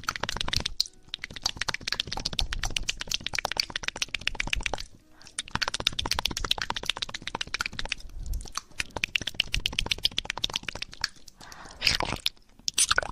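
Close-miked ASMR trigger sounds: a dense, fast run of small clicks and crackles, broken by brief pauses about a second in, around the middle and near the end.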